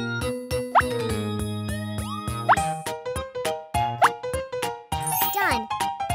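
Upbeat children's-style background music with a steady clicking beat, broken three times by quick rising 'plop' slide effects and ending in a warbling, wavy melody.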